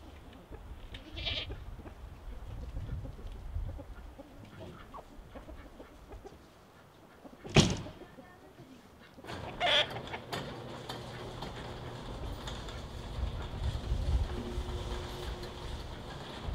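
Farmyard chickens calling now and then, with a single sharp bang about halfway through that is the loudest sound. A low steady hum comes in over the last few seconds.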